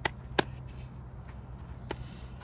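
Three sharp slaps of gloved hands, two in quick succession at the start and one near the end.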